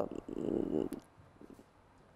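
A short, rough breath or sigh close to a clip-on microphone, lasting under a second, followed by quiet room tone.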